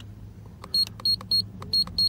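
HKS EVC6 IR boost controller giving four short high beeps, each with a click, as its buttons are pressed to step through the boost map. A steady low hum runs underneath.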